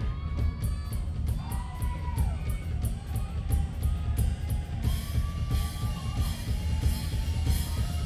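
Live rock band playing, the drum kit keeping a steady beat under a heavy low end and a gliding melodic line. About five seconds in the cymbals come in harder and brighter.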